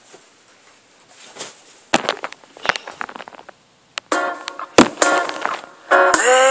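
Loud music cuts off at the start, leaving low room sound broken by scattered sharp knocks and clicks, from about two seconds in, as the computer and camera are handled. A song with singing starts up again at the very end.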